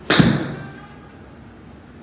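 A TaylorMade SIM MAX 7-iron striking a golf ball off a hitting mat: one sharp crack just after the start, fading away over about half a second.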